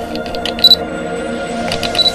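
Ambient synth intro music, a steady held chord, overlaid with camera-style sound effects: quick clicks and a short high beep about two-thirds of a second in, and another cluster of clicks with a beep near the end.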